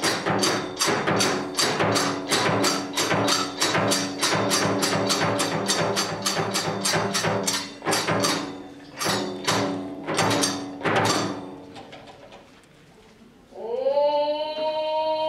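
Kagura drum and hand cymbals beating a fast, even rhythm of about three strokes a second, breaking into a few spaced strikes around nine to eleven seconds in and dying away. A long held note begins just before the end.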